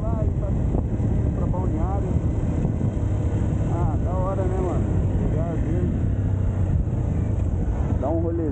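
Honda XR 200 dirt bike's single-cylinder four-stroke engine running steadily while under way.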